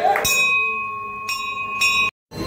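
Temple bell struck and left ringing with a steady, clear tone, then struck lightly twice more near the end.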